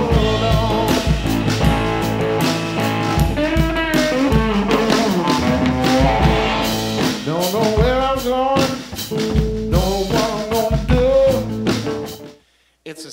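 Live blues band: electric guitar playing sustained and bending notes over a drum kit, with a man singing. The music cuts off abruptly at the end.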